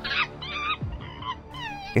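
A few short, high-pitched animal calls whose pitch drops sharply, over quiet background music.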